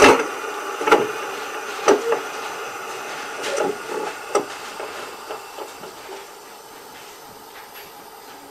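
Gauge 1 model steam locomotive's sound decoder playing its standing sound: a hiss with a few knocks in the first half, getting quieter over the second half. The sound is not yet the class 59's own but one borrowed from another KM1 locomotive.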